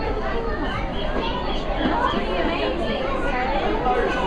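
Background chatter of a crowd of visitors, adults and children talking over one another, with no single clear speaker.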